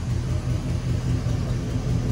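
Chevrolet Caprice engine idling with a steady low exhaust rumble.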